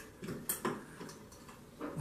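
Several light clicks and taps of a chrome grab bar's metal mounting flange against ceramic tile as it is set against the wall and lined up over drilled holes.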